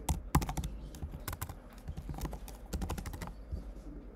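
Typing on a computer keyboard: quick runs of key clicks in a few bursts, near the start, about a second in and again around three seconds in.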